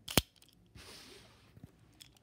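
A single sharp plastic click as a Beyblade ripcord launcher is picked up and handled, followed about a second in by a brief soft rustle.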